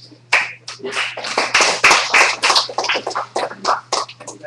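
Audience applauding, beginning about a third of a second in with many quick overlapping claps.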